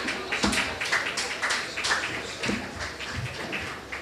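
Audience applauding, the clapping gradually thinning and fading away.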